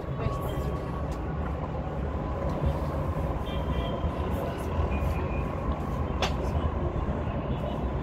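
Steady city traffic noise from a busy road below: a continuous low rumble of engines and tyres, with a brief sharp click about six seconds in.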